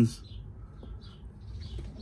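Faint background bird chirps, a few short calls, over a low steady hum.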